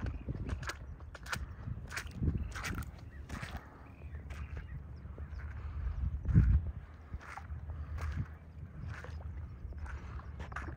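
Footsteps on wet, waterlogged ground, about one step every three-quarters of a second, over a low rumble of wind on the microphone that swells twice.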